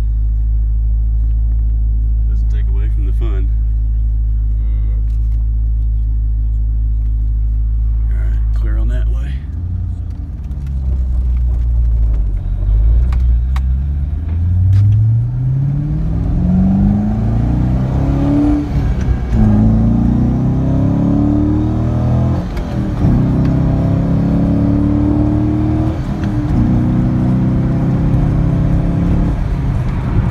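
A 2003 Chevrolet Corvette's 5.7-litre V8, heard from inside the cabin, idles steadily for about nine seconds. It then pulls away and accelerates, the engine note rising and dropping back with each of several gear changes.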